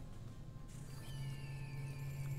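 Online slot game's soundtrack: a low steady drone, joined in the second half by a faint high tone gliding slowly downward.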